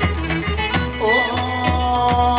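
Live Pontic Greek folk dance music: clarinet and keyboards over a regular daouli drum beat. A held, wavering melody note comes in about halfway through.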